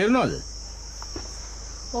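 Insects chirring in a steady high-pitched drone, with a voice finishing a phrase at the start and another voice coming in near the end.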